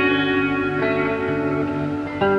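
Treble-heavy guitar playing an instrumental passage of held, ringing notes with reverb, a new note coming in about a second in.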